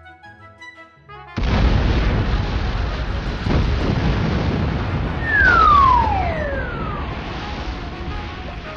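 Cartoon explosion sound effect: a sudden loud blast about a second and a half in, its rumble running on and slowly dying away. A falling whistle slides down in pitch over the rumble about five seconds in, after soft music notes at the start.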